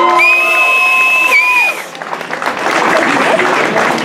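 A live band's last sustained note rings out and stops about two seconds in. The audience then breaks into applause and cheering.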